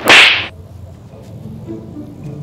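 A single loud slap of an open hand on a plastic motorcycle helmet, a sharp smack at the very start that dies away within half a second.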